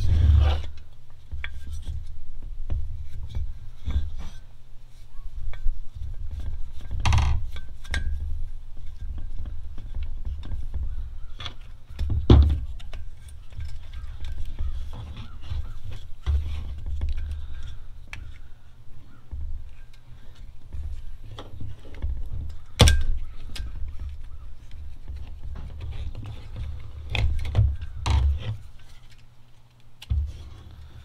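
Hands working on a diesel air heater's plastic control-box cover and wiring connectors, making scattered clicks, taps and knocks, with a sharp knock about 23 seconds in. A steady low rumble runs underneath.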